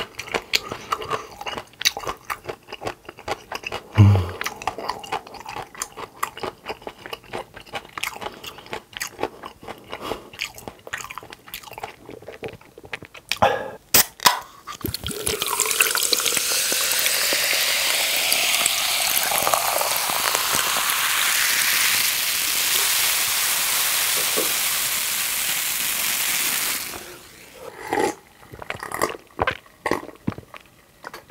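Close-miked chewing and crunching of food. A couple of sharp clicks follow, then cola is poured over ice into a glass jar, fizzing in a loud steady hiss for about twelve seconds before it stops suddenly. A few gulps come near the end as it is drunk.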